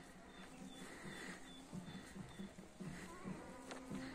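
Faint buzzing of a flying insect such as a bee, rising and falling as it passes, with a faint high repeated chirp in the first half.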